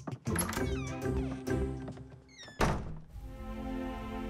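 Squeaky cartoon pet-creature mews and chirps with a giggle over light music, then a thump about two and a half seconds in. Held string chords come in after it.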